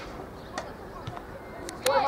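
Faint open-air background of a youth football match. Near the end there is a sharp knock, and a high child's shout starts right after it.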